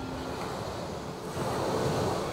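Ocean surf washing onto the shore with wind, a wave swelling louder a little past halfway through.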